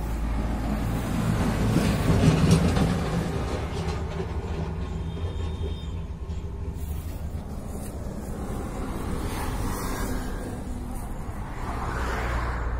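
Road traffic rumbling, with a heavy vehicle's engine swelling as it passes about two to three seconds in, then a steady low rumble.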